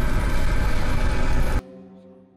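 Loud, dense soundtrack of a title sequence with a heavy low rumble. It cuts off suddenly about one and a half seconds in, leaving a few held tones that fade away.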